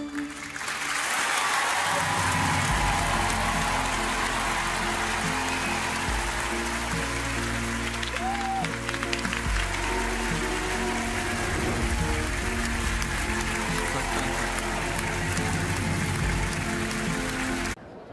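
A studio audience applauding over music that carries steady low bass notes, changing every few seconds. Both cut off abruptly just before the end.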